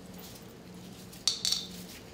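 Gloved hands kneading and squeezing a soft sugar, butter and condensed-milk filling in a small bowl, with one short burst of squishing and rustling about a second in.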